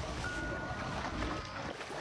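Surf washing steadily, a soft, even rush of breaking waves.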